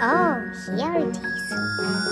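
A tinkling magic-sparkle chime sound effect over children's background music. In the first second come two short pitched swoops that rise and then fall.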